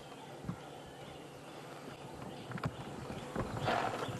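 Female leopard calling for her cubs with hoarse, rasping grunts, a few faint ones and then a louder one near the end.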